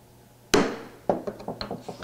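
A mallet striking a wood chisel set in a dovetail's scribe line, deepening the line: one sharp knock about half a second in that rings briefly, then a few fainter knocks and clicks.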